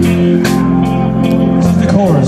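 Live band music with a guitar strumming chords in a steady rhythm.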